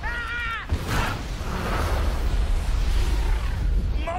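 Large pyrotechnic explosions rumbling deeply, with a man's brief yell at the start and a sharp bang just under a second in.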